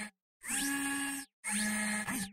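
Sound-design effect for an animated logo: short whirring bursts a little under a second each, every one with a steady hum and a rising whine, stopping abruptly between them. One burst ends right at the start, a second fills the middle, and a third begins about one and a half seconds in.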